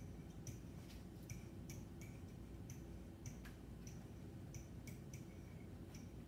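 Pen tip of an interactive whiteboard tapping and sliding on the board's surface while a sentence is written by hand: faint, irregular clicks, about two a second.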